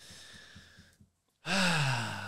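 A faint breath, then about one and a half seconds in a man's loud, breathy, drawn-out vocal sound with a steadily falling pitch, like a sigh.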